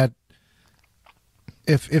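Speech: a voice trails off into a pause of about a second and a half, and a small click comes just before the talking starts again.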